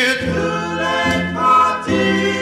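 Doo-wop vocal group singing wordless, sustained harmony chords between the lead singer's lines, moving to a new chord about halfway through.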